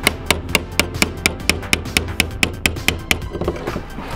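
Quick, evenly spaced metal taps, about four a second, as a screwdriver is driven against the fuel pump's lock ring to turn it tight, with music underneath.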